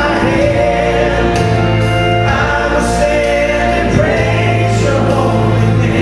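Gospel vocal trio singing in harmony, holding long notes over a steady accompaniment with a bass line.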